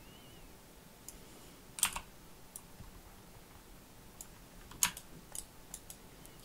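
Scattered clicks of a computer keyboard and mouse, about seven in all, with two louder ones about two and five seconds in, over faint room hiss.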